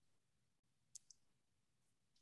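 Near silence, broken by two faint, short clicks in quick succession about a second in.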